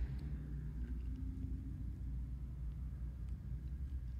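Quiet room tone: a low steady rumble with a few faint ticks.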